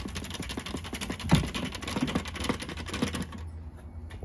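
Dirt and debris rattling out of a bagless vacuum's clear dust canister into a trash can: a rapid run of small clicks and taps that thins out a little past three seconds in.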